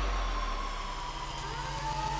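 Electronic dance music in a quieter build section: held, chopped bass notes under a synth tone that slides slowly downward, with rising sweeps starting near the end.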